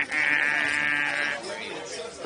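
A mobility scooter's electric horn giving one long, buzzy honk of about a second and a half, ending sharply, used to clear people out of the way.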